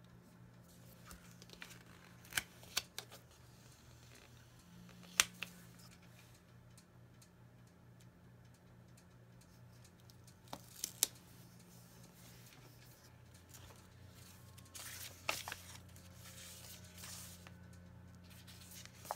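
Paper planner stickers being peeled off their backing and pressed onto a planner page: a few sharp, light clicks and taps spread through, with a stretch of paper rustling near the end as sticker sheets are handled. A low steady hum runs underneath.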